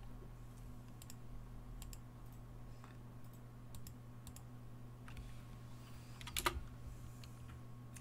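Sparse, faint clicks of a computer keyboard being typed on, with a short louder run of keystrokes about six and a half seconds in, over a low steady electrical hum.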